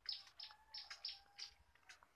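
A small bird chirping, a quick run of about five short, high notes, faint, over a thin steady tone lower down.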